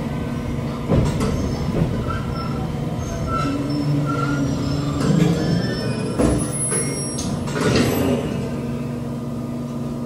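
JR Kyushu 817-series electric train coming to a stop at a station, heard from inside the car: a steady running hum with low tones and a few clunks as it halts.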